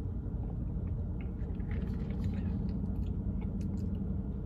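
A person sipping and swallowing fizzy peach soda from a plastic cup, with faint scattered small clicks, over a steady low rumble inside a car cabin.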